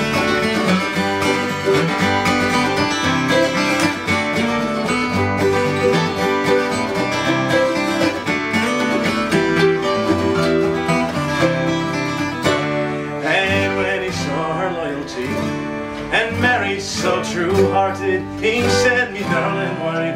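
An acoustic string band plays an instrumental break between verses in a bluegrass style: strummed acoustic guitars with a resonator guitar played flat on the lap. Plucked lead notes come more sharply in the second half.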